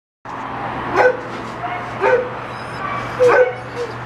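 Dog barking three times, about a second apart, over a steady low hum.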